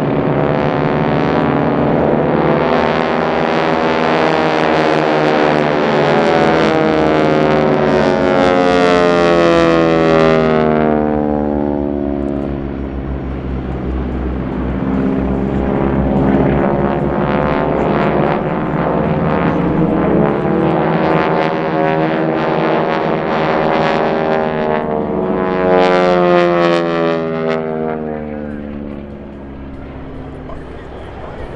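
Formation of four North American T-6 Texans, their nine-cylinder radial engines and propellers droning. The sound swells twice, about a third of the way in and again near the end, with the pitch sweeping as the aircraft pass.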